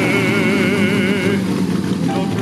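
A singer holds a long operatic note with vibrato that ends about a second and a half in. Under it, a Bugatti Type 35's straight-eight engine runs steadily while the car stands still.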